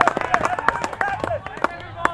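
Short shouted calls from people on and around a Gaelic football pitch during play, mixed with many sharp clicks and knocks; the calls thin out near the end.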